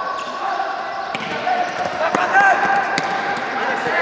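A futsal ball being kicked and struck on a sports hall floor, several sharp knocks a second or so apart, under the shouts of players and spectators echoing in the hall.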